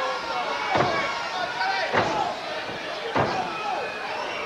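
Three thuds of blows landing in a pro-wrestling corner brawl, spaced a little over a second apart, over a steady arena crowd din.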